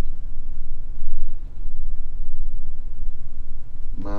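A low, steady rumble of background noise with no speech over it.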